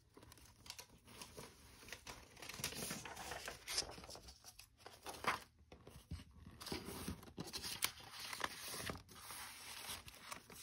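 Paper rustling and crinkling, in irregular bursts, as sheets of old paper and a paper tag are handled and shifted on a journal.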